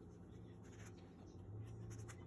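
Child's safety scissors faintly cutting through construction paper, blades scraping and sliding along the sheet, over a low steady hum.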